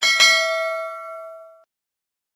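Notification-bell ding sound effect: two quick strikes about a fifth of a second apart. They ring on and fade, then stop after about a second and a half.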